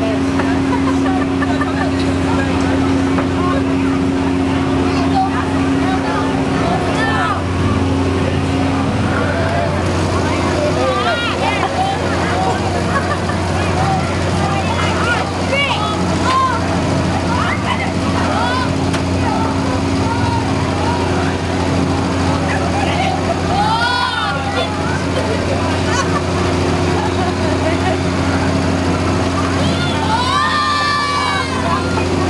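Steady low machine hum of a fairground thrill ride, with crowd voices and riders' high screams, loudest about 24 seconds in and again at the end.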